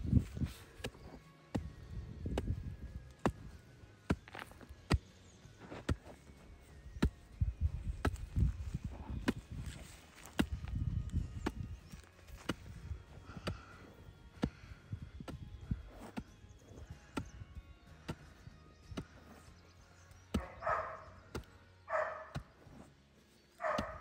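A hoe blade chopping and scraping into loose soil while a furrow is dug, a run of irregular knocks and scrapes. Two short pitched calls are heard near the end.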